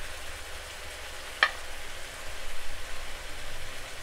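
Curry chicken sizzling in a frying pan as chopped bell peppers and thyme are scraped in off a plate with a silicone spatula, the sizzle getting louder and uneven as they land. One sharp tap sounds about a second and a half in.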